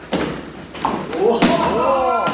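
Thuds and slaps of bodies and feet on a padded martial-arts mat during an aikido throw, three sharp impacts, the last and loudest as the partner is thrown down. Right after it, voices go "ooh".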